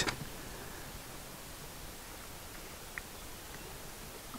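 Faint lapping of lionesses drinking from a muddy puddle, heard under a steady low hiss, with one soft tick about three seconds in.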